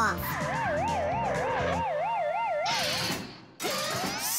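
Electronic alarm siren sound effect, a pure tone warbling quickly up and down about three times a second for a little over two seconds, over background music that stops partway through. A short hiss follows near the end.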